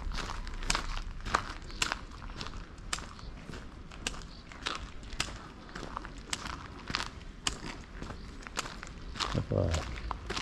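Footsteps walking on paved stone, a crisp gritty step about twice a second. A brief voice is heard near the end.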